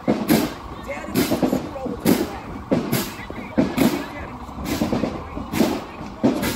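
Marching band drum cadence on the street, with a crashing hit on each beat a little under once a second, and voices shouting over it.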